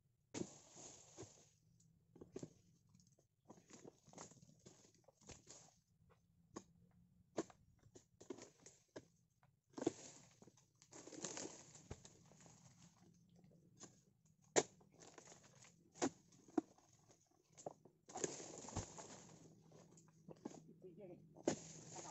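Irregular rustling and crunching from a person moving through undergrowth and dry palm debris close to the microphone, with a few sharp clicks in between.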